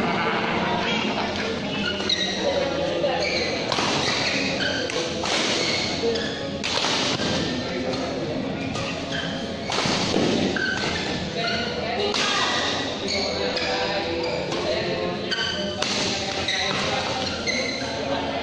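Doubles badminton rally: rackets striking the shuttlecock again and again at irregular spacing, with shoes thudding and squeaking on the court mat. The sound echoes in a large hall.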